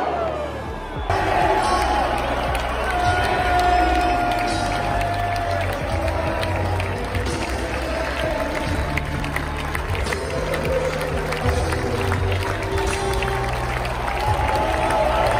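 Large football stadium crowd cheering, clapping and singing in celebration at the final whistle of a home win, with music over the stands.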